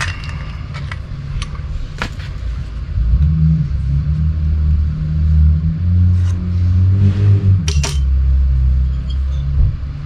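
A motor vehicle engine running with a low, uneven rumble, growing louder about three seconds in and easing off just before the end. Sharp clicks come at about two seconds and again near eight seconds.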